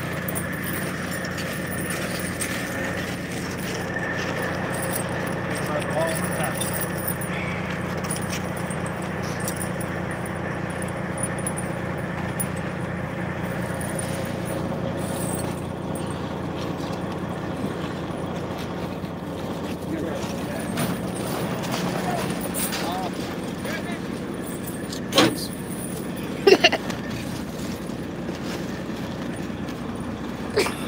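Heavy diesel truck engine idling steadily with a constant low hum. A few sharp knocks stand out near the end.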